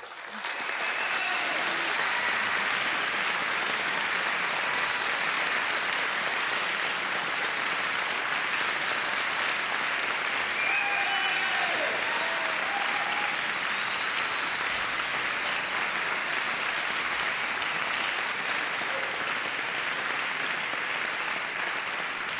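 Audience applauding, starting suddenly and holding steady, with a few faint voices calling out about halfway through.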